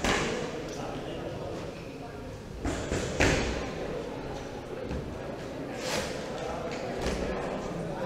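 Indistinct voices in a large, echoing hall, with several short, sharp knocks or thuds; the loudest comes about three seconds in.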